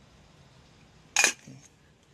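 A single sharp metallic clank of the metal water pot against its round metal tray, a little past halfway, with a brief ring after it.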